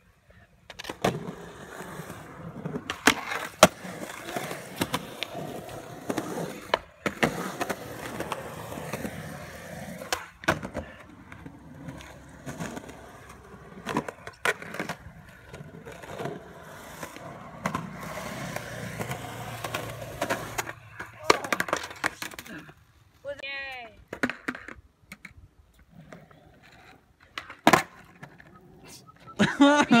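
Skateboard wheels rolling on concrete, with sharp clacks of the board popping and landing every few seconds. The rolling stops about two-thirds of the way through, leaving a few separate clacks.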